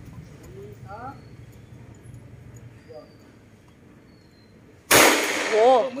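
A single handgun shot about five seconds in, sudden and by far the loudest sound, with a long ringing tail.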